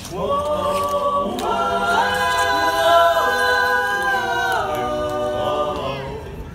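A barbershop quartet of four men singing a cappella without words, sliding up into a long held close-harmony chord. The chord swells up to a higher, fuller and louder chord about two seconds in, is held, then falls away near the end.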